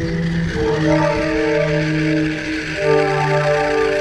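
Background music: a melody of long held notes moving from pitch to pitch over a steady backing.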